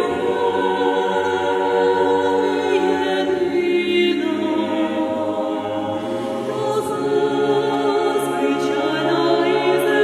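Mixed choir of women's and men's voices singing a cappella in long held chords, moving to a new chord about four seconds in.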